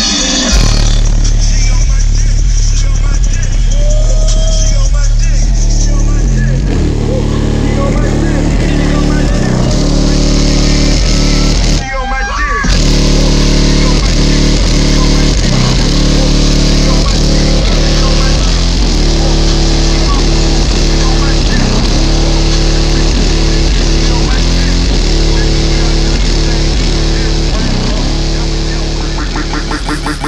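Very loud bass-heavy rap music played through MMATS Juggernaut car subwoofers on two 4,000-watt amplifiers, with long sustained deep bass notes; the sound briefly cuts out about twelve seconds in.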